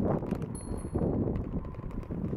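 Bicycles rolling along a paved path: wind on the microphone with the rattle and tyre noise of the bikes, and a brief thin high tone about half a second in.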